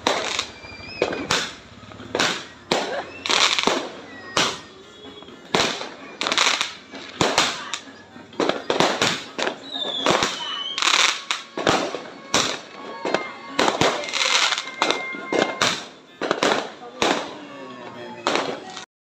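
Aerial fireworks exploding overhead: an irregular run of loud bangs and crackling bursts, about one or two a second, with a few whistling tones among them.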